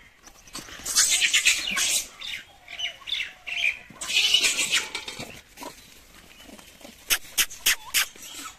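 Rhesus macaques screeching during a scuffle over food, in two loud bursts about a second in and about four seconds in, with quieter squeals between. A few sharp clicks come near the end.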